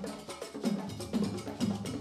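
Live African drum ensemble playing a fast steady rhythm on hand drums and a large bass drum: quick sharp strokes over a deep drum tone about twice a second.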